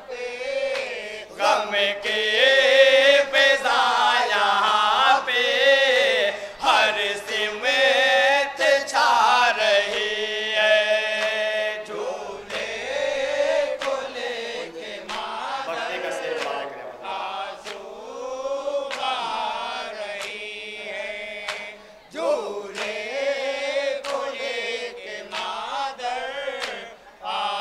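A group of men chanting a Muharram noha (mourning lament) in unison, a lead voice over microphones and the gathering answering, punctuated by sharp slaps of matam (chest-beating).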